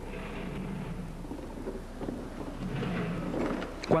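Mechanic's creeper rolling on a concrete shop floor under a motor grader: a steady low rumble.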